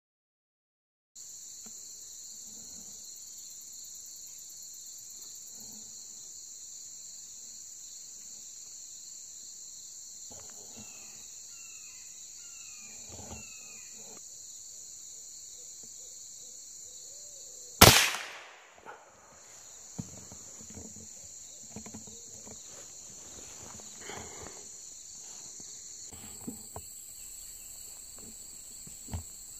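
A single rifle shot about 18 seconds in, sharp and by far the loudest sound, dying away over about a second. It sounds over a steady, high-pitched drone of insects.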